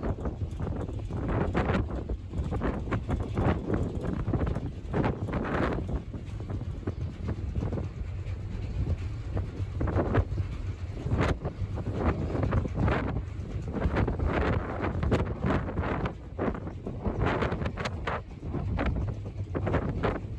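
Wind gusting across the microphone on a ferry's open outer deck, in uneven surges over a steady low rumble from the moving ferry.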